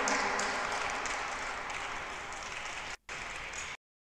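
Audience applause, gradually fading, with a brief dropout near three seconds and cut off abruptly shortly before the end.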